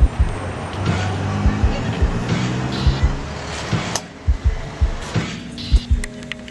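Background music with a steady low drum beat and sustained tones.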